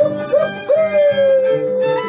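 Andean folk band with harp and violins playing a lively dance tune, over which a voice gives a few short high falsetto whoops and then one long high cry that slides slowly downward.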